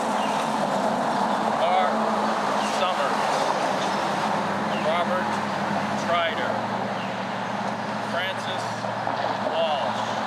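A man's voice reading a list of names aloud, slowly, one short utterance about every second, over a steady background noise.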